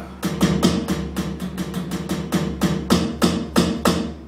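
Roland TD-9 electronic drum kit's floor tom sound, triggered by drumstick hits on a Roland PD-85 mesh pad and heard through an active monitor speaker: a steady run of about five hits a second, each with a short pitched ring.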